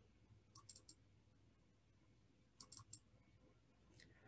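Faint computer mouse clicks: two quick runs of about three clicks each, about two seconds apart, against near silence.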